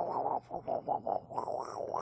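A dog sniffing and breathing right at the microphone in quick short pulses, several a second, with a brief pause about half a second in.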